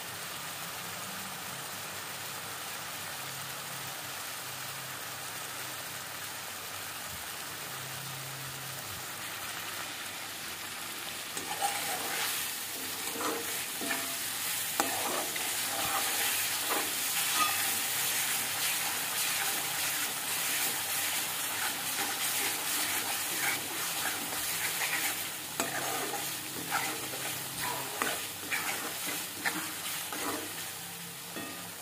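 Onion-garlic masala paste frying in oil in a metal kadhai, a steady sizzle. From about eleven seconds in, a metal spoon stirs and scrapes the paste around the pan, the sizzle growing louder with repeated scraping strokes.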